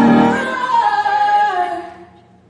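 Recorded ballad with a female lead vocal. The backing drops away about half a second in, leaving a held sung note that slides down in pitch, and the music fades out near the end.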